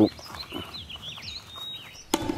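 Small birds chirping: a run of short, quick high calls that rise and fall, ending in one brief held note.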